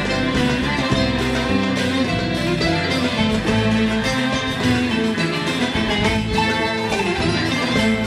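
Instrumental introduction of a Turkish art-music song in makam Nihavend, aksak rhythm, led by plucked strings such as the oud, with no singing yet.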